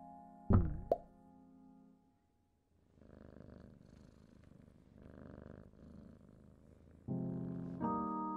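Cartoon soundtrack: a held chord fades out, and a sharp plop with a quick falling-then-rising pitch sounds about half a second in, followed by a second shorter one. After a short silence, a cat purrs in three soft rasping breaths as two cats nuzzle. A new sustained chord comes in near the end.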